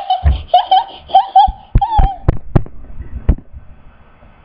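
A child laughing in a quick run of short, high 'ha' bursts for about two seconds. Several sharp knocks follow, close together, over the next second and a half.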